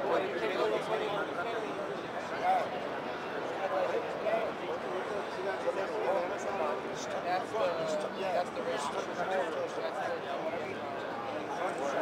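Indistinct voices talking steadily, too blurred for any words to be made out.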